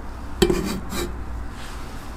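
A kitchen utensil knocking against a dish twice, about half a second apart, each knock with a short ring.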